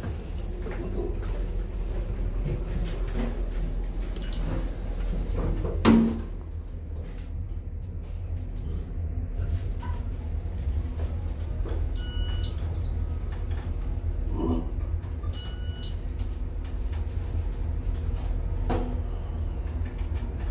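Traction elevator car travelling downward with a steady low hum. One loud thump comes about six seconds in, with a couple of short electronic beeps and a few faint knocks later on.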